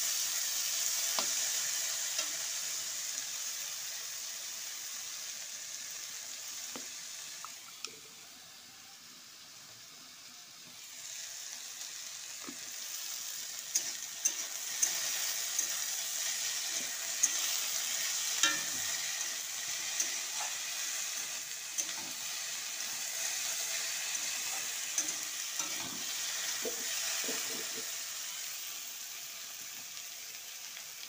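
Thin-cut potato sticks sizzling as they fry in hot oil in a metal pan, stirred with a spatula that gives scattered scrapes and taps against the pan. The sizzle drops for a few seconds about a third of the way in, then comes back.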